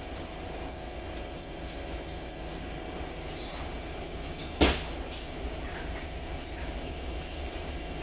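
Volvo B8RLE single-deck bus idling while stopped, its diesel engine giving a steady low hum through the cabin. One sharp knock a little past halfway through.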